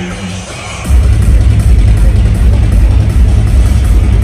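Loud electronic dance music from a DJ set on a club sound system: the heavy bass is cut out at first, then comes back in hard about a second in and runs on steadily.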